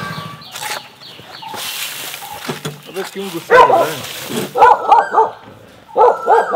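A dog barking: a bark about three and a half seconds in, then three quick barks in a row near the end.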